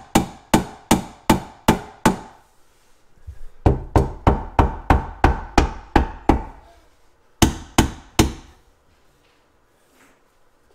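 Rubber mallet striking an ambrosia maple floating shelf through a folded towel, tapping it home onto its wall bracket: sharp knocks about two or three a second in three runs, the last only three strikes, then stopping. The shelf is binding against the wall, which is put down to a bump in the drywall.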